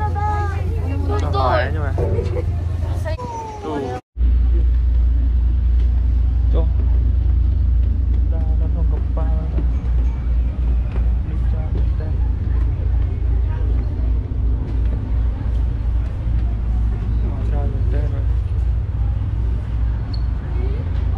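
Several people's voices chattering for the first few seconds. After a sudden cut, a steady low rumble takes over, the sightseeing boat's engine running at the pier, with faint voices under it.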